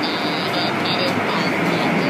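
Automatic car wash running, heard from inside a car: a steady wash of water spray and spinning cloth brushes on the body, with a hiss that keeps cutting in and out.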